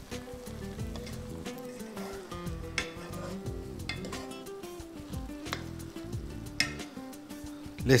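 Wooden spoon stirring rice and diced carrots in a hot pot, scraping the pot with scattered clicks over a low sizzle of the cooking rice.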